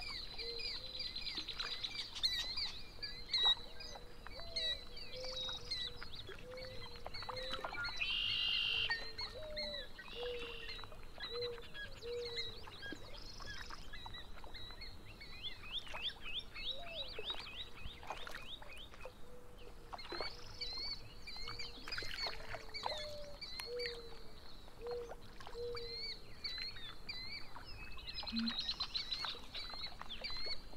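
A chorus of several birds singing and calling: quick high chirps, slurred notes and trills over a series of short, repeated low calls, with a louder trill about eight seconds in.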